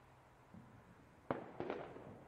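Fireworks going off: a soft low thump, then a sharp bang just past halfway followed by a quick run of smaller cracks, over a faint background.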